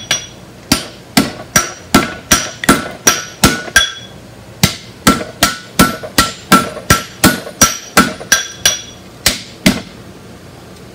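Hand hammer striking red-hot steel on an anvil, steady blows about two to three a second with a bright ring after each, drawing out the edge of a forged hook. The blows come in two runs with a brief pause a little before halfway.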